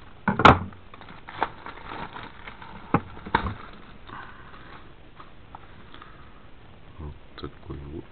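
A plastic packaging bag crinkling and rustling as a banknote album is pulled out of it and handled, with a few sharp clicks and knocks, the loudest about half a second in.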